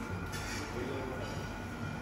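Breakfast-room ambience: a steady low rumble and hum with voices murmuring in the background.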